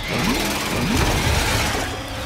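Film sound effect of a machine running loud, with two rising whines in the first second over a steady low rumble and hiss.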